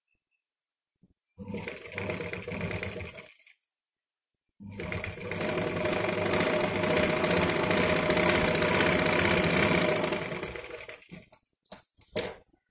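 Sewing machine stitching through fabric in two runs: a short one of about two seconds, then a longer one of about six seconds that winds down near the end, followed by a few sharp clicks.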